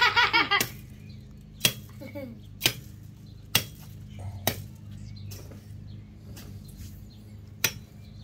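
Machete blade (a Samoan pelu) chopping into the base of a tree trunk: five sharp strikes, about one a second, with a longer pause before the last one.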